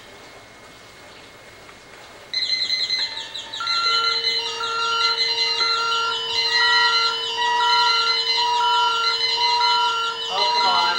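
A table of electronic clock radio alarms going off together. After about two seconds of quiet room hiss, a high, rapid buzz starts suddenly. Within the next two seconds more alarms join with pulsing beeps at different pitches and a steady lower tone, all sounding over one another.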